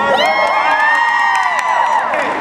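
A group of people cheering and whooping together: many voices shoot up in pitch at once and are held for about two seconds.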